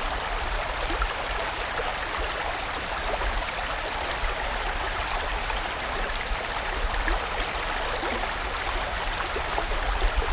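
Mountain stream rushing over rocks: a steady, even rush of water with no change.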